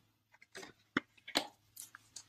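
A few soft, short clicks, spaced roughly half a second apart, over a quiet room.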